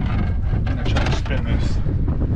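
Wind buffeting the microphone, a steady low rumble, with short sharp sounds over it.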